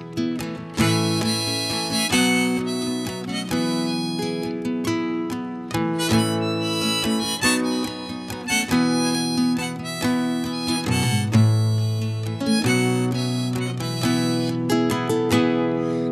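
Harmonica played in a neck holder, holding long notes over a strummed acoustic guitar, in an instrumental passage of a song.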